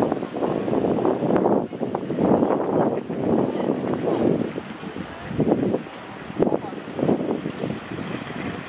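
Wind buffeting the microphone in irregular gusts that rise and fall every second or so.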